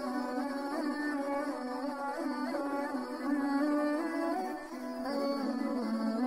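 Instrumental background music: a melody line over a sustained low note.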